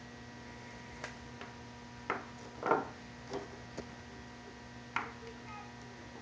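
Alligator-clip leads being handled on a wooden table to reverse the polarity to the actuators: half a dozen separate clicks and knocks about a second apart, over a faint steady electrical hum.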